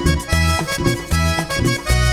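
Vallenato band playing an instrumental break led by a diatonic button accordion, its melody over a steady low beat of about three pulses a second.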